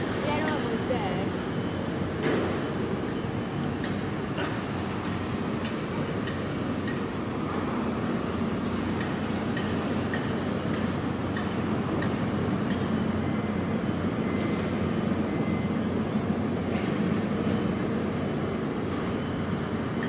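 Steady city street traffic noise: a low rumble of idling and passing vehicles that swells slightly around the middle, with a few faint clicks.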